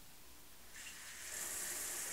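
Overhead rain shower head turned on about three quarters of a second in, then a steady hiss of water spraying down.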